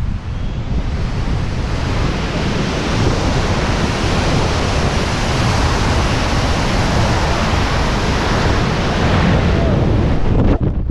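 Loud rushing wind on a helmet-mounted camera microphone in BASE-jump freefall, building over the first couple of seconds as the jumper gains speed, then holding steady.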